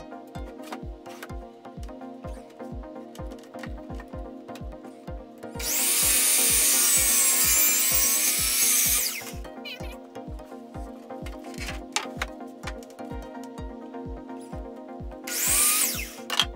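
A DeWalt sliding miter saw spins up about five and a half seconds in and cuts through a radiata pine plywood panel for about three and a half seconds, its motor pitch dipping under load and then recovering before it stops. It starts again briefly near the end, over background music with a steady beat.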